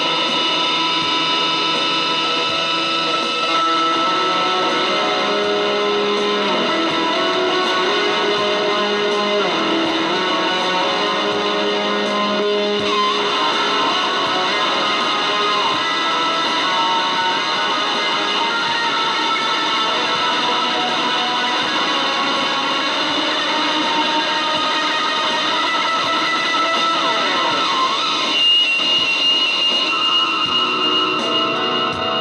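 Electric guitar improvising in C-sharp minor through a pedal chain of overdrive, wah and reverb into a Roland JC-120 amp. Sustained, overlapping notes with a few bent or swept notes.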